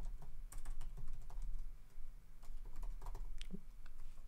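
Typing on a computer keyboard: an irregular run of key clicks as a terminal command is typed out.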